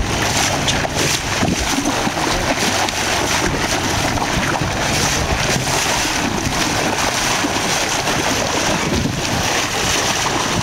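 Wind buffeting the microphone over the steady rush of churning sea water along a boat's hull.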